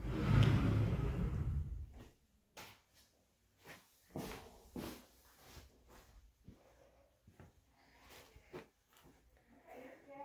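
A closet door being closed with a low rumble lasting about two seconds, then scattered soft footsteps and small knocks as someone walks through the rooms.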